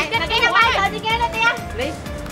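A young man talking in Khmer over background music.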